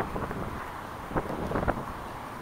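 Wind buffeting the microphone with a steady low rumble and traffic in the background, broken by a few short sounds about a second in and near the end.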